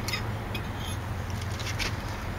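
A few light clicks and scrapes of a metal utensil against a plate, over a steady low outdoor rumble.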